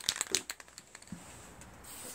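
Handling noise: a quick run of light clicks and crinkling in the first second, then faint room hiss.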